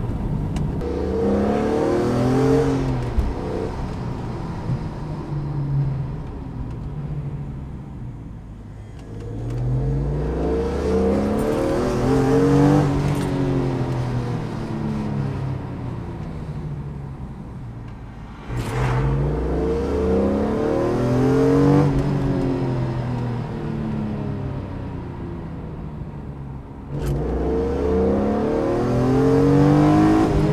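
Car engine heard from inside the cabin, accelerating up through the revs and then easing off as the car slows, four times over. These are the repeated speed-up-and-slow-down runs of bedding in new brake pads on the rotors.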